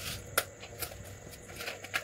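A few light clicks and taps as a metal cake tin is handled on a paper sheet. The sharpest click comes about half a second in.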